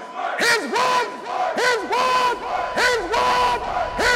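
Group of voices shouting a chant in unison: a quick string of short calls, each rising and then falling in pitch.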